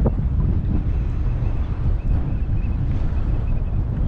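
Wind buffeting the camera microphone: a steady, uneven low rumble over choppy water.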